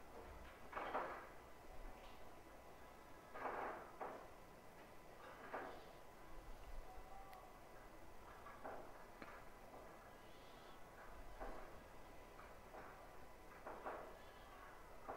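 Quiet pool-hall background with about six faint, short knocks and clacks spread a couple of seconds apart.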